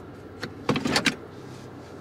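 Automatic shift lever of a 2021 Toyota Corolla clicking into Park, and the electric parking brake's motor whirring briefly as it applies itself.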